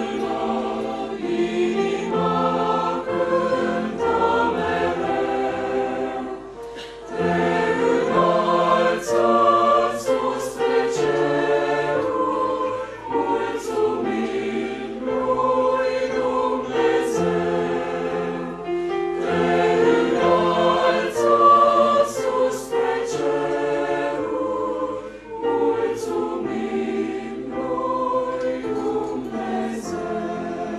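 Mixed choir of men and women singing a hymn in parts, phrase after phrase, with a brief breath between phrases about seven seconds in.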